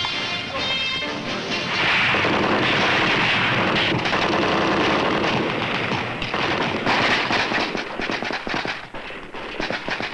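Music with rifle and machine-gun fire; a dense loud stretch from about two seconds in gives way to a rapid, irregular scatter of sharp shots in the second half.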